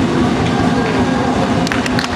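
Loud, muddy mix of show music from a sound system and crowd noise, with a few sharp claps near the end.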